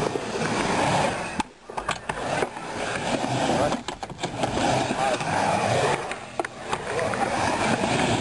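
Skateboard wheels rolling on a ramp, with several sharp clacks as the board and trucks hit the ramp's edge and coping.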